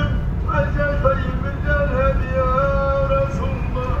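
A man singing a Moroccan Sufi madih (devotional praise chant) in long held, gliding notes, with a short break between phrases just after the start. Steady low road and engine rumble of a moving car lies beneath.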